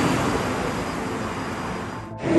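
Steady outdoor background noise like distant traffic, slowly getting quieter.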